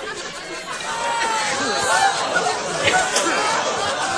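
Several voices talking over one another in indistinct chatter.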